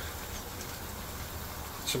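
Pan of curry sauce simmering over a gas hob burner: a steady, even hiss and low rumble with no distinct pops.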